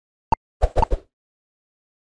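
A few short, sharp electronic pops from an intro template's sound design: one about a third of a second in, then a quick run of three or four just after half a second.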